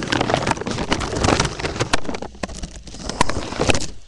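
A deflated foil helium balloon crinkling and crackling loudly, right at the microphone, as it is handled and squeezed against the mouth.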